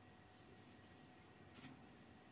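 Near silence: faint room tone, with one brief, faint rustle about one and a half seconds in.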